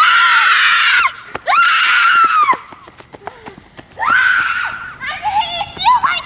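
Two girls screaming loudly while running: several long, high-pitched screams, with short quieter gaps between them.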